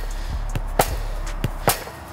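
Football kicked against a rebounder and played back first-time: two sharp thuds about a second apart, with fainter knocks between.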